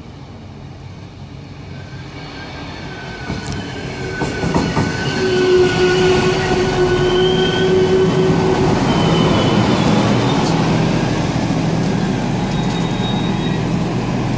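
A euregiobahn DB Class 643 Talent diesel multiple unit pulling into a station. Its engine and rolling noise grow steadily louder over the first five seconds or so, with a steady high squeal as it slows over the next few seconds. The diesel engine then runs on loudly and steadily as the train draws alongside.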